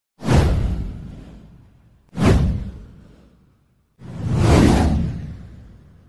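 Three whoosh sound effects for an animated title, each one hitting and then fading away over about a second and a half. The first two come in suddenly, while the third swells in more slowly and lasts longer.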